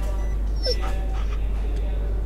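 A dog whimpering briefly, a short bending cry a little under a second in, over a steady low hum.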